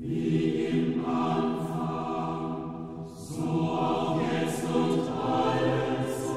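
A choir singing slow sacred music, holding long notes that move to a new pitch every second or so, with soft sung consonants between them.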